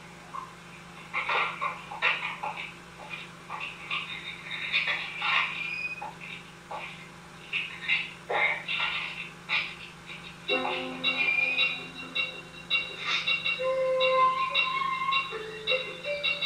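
A run of short, irregular chirping calls, then from about ten seconds in, held notes played on a recorder.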